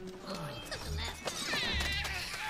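Animated film soundtrack playing at low volume: background music with small sound effects, a low rumble twice and a brief wavering high sound in the second half.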